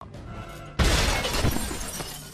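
A large glass window shatters with a sudden loud crash about a second in, then tails off, over film score music.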